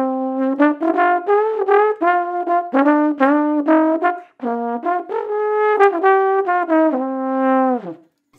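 Tenor trombone playing a short melodic passage of quick separate notes with a full, clear tone, as an example of a good, warmed-up sound. It ends on a long held note that slides down in pitch and cuts off.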